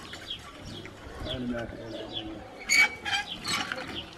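Doves cooing softly, with a few short high chirps near the end.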